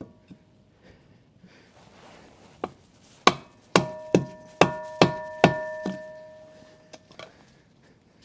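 Hammer tapping a stick of wood held against a boat propeller to shock it loose from the shaft while a hydraulic puller holds it under tension. After a couple of light knocks, six sharp blows come about two a second, and a metallic ringing carries on between them and fades after the last.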